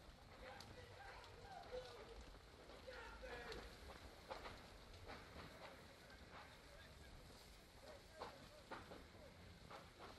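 Faint crackling of a large structure fire, with irregular sharp cracks and pops from the burning material.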